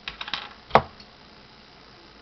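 Hand-held plastic snap pliers clicking as they are handled: a quick run of light clicks, then one sharp, loud click less than a second in and a faint tick just after.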